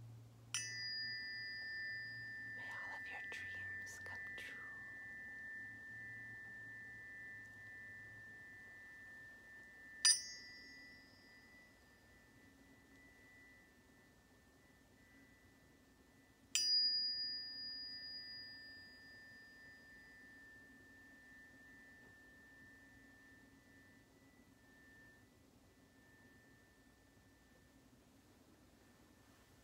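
Tuning forks struck three times, each a sharp tap followed by a high ringing tone that slowly fades over many seconds. A brief higher overtone dies away soon after each strike. The second strike is the loudest, and the ring wavers for a moment a few seconds in.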